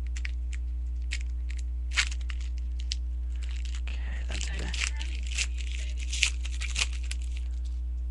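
A trading-card pack wrapper being torn open and crinkled by hand, with scattered sharp crackles that come thickest in the second half. A steady low electrical hum runs underneath.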